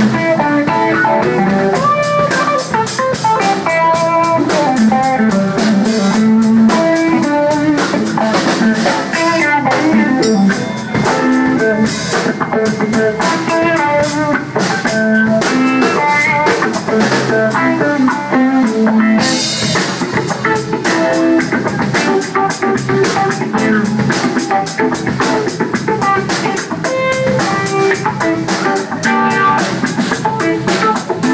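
Live instrumental funk jam: electric guitar playing riffs over bass guitar and a drum kit keeping a steady, busy beat.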